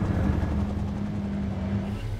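A steady low engine drone with a held hum.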